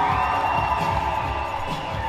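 Dance music playing as the audience cheers, with a long, steady high note held through most of it.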